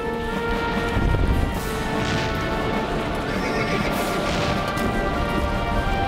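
A horse whinnying over music of long held notes, with a low rumble about a second in.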